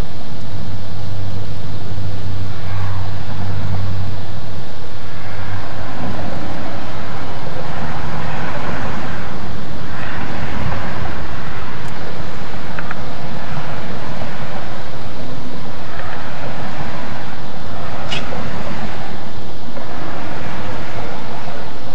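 Loud, steady rushing noise with a low hum through the first few seconds and a few faint brief sounds later on.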